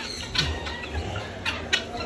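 A few short clucks from penned fowl over a low, steady rumble.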